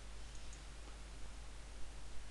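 A few faint computer mouse clicks over a steady low hum and hiss.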